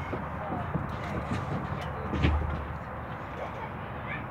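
Playground background with faint children's voices in the distance, and a single dull thump a little over two seconds in.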